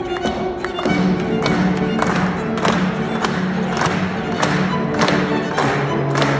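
Live classical music from a small chamber ensemble, with violin playing held notes. From about a second in a steady beat of sharp strokes, close to two a second, runs under the music.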